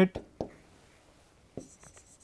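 Chalk writing on a greenboard: a few sharp clicks as the chalk strikes the board, with faint scratching as the letters are drawn.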